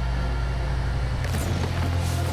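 A low, steady drone of several held deep tones, with hissing noise joining about a second and a half in.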